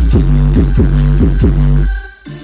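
Loud electronic dance music with a heavy, steady sub-bass and a repeated falling-pitch bass hit about four times a second. The music cuts out abruptly just before the end.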